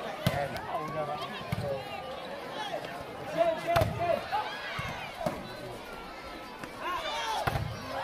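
Volleyball crowd chatter and shouting, with a few sharp smacks of hands striking the ball during a rally, the loudest about four seconds in.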